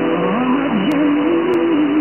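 A song with a wavering melody over held notes, received on shortwave from a pirate station: thin and muffled through the receiver's narrow audio, under a steady hiss of static.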